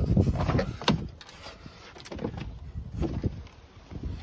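A pickup truck's door being opened by its outside handle, the latch clicking about a second in, followed by a few lighter clicks and knocks.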